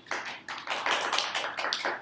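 A small group clapping, a quick dense patter of hand claps right after the presenter's closing thanks.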